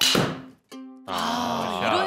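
Golf driver striking a teed ball, one sharp crack with a short ringing tail right at the start. Light plucked-string background music plays, and a louder wavering pitched sound takes over about a second in.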